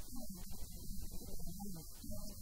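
A woman talking into a handheld microphone, her voice muffled and hard to make out, over a steady low electrical hum.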